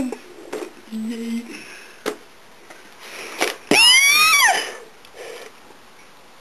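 A person's high-pitched shriek about four seconds in, lasting under a second and falling in pitch, amid faint talk and sniffing.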